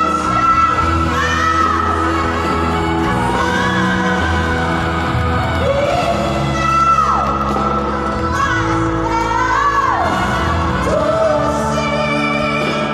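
A woman singing into a microphone with a live band, amplified through a PA, with long held notes that bend and waver.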